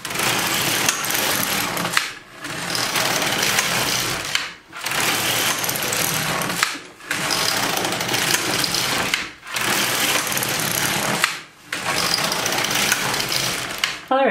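Silver Reed LK150 knitting machine carriage pushed back and forth across its plastic needle bed, knitting six rows. Each pass is a steady rasping clatter of about two seconds, with a brief pause as the carriage turns at each end.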